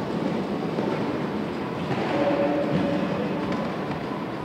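A show-jumping horse cantering on the sand footing of an indoor arena. Its hoofbeats keep up a steady rolling rhythm over the hall's ambience.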